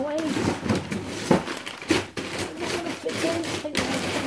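Voices talking in a small kitchen, with a few sharp knocks as frozen food packets are put away in a freezer.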